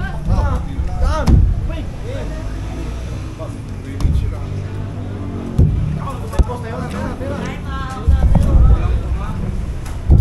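Indistinct voices of people around the table over a constant low rumble, with a few short sharp knocks scattered through.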